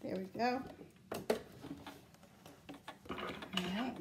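A few sharp, isolated clicks and knocks of handling at a sewing machine just stopped after a seam, as the work is readied to have its thread cut.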